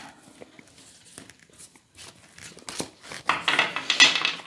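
Tarot cards being gathered from a glass tabletop, with light taps and slides of the cards, then a louder rustling from about three seconds in as the deck is worked in the hands.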